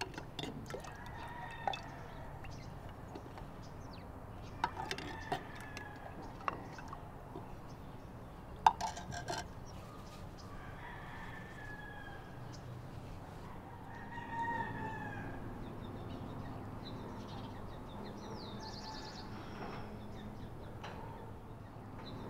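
Roosters crowing several times among other birds, with sharp ceramic clinks as a drink is ladled from a clay pot and served in clay cups; the loudest clink comes about eight and a half seconds in.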